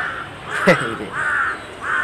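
A crow cawing repeatedly, about four harsh caws in two seconds.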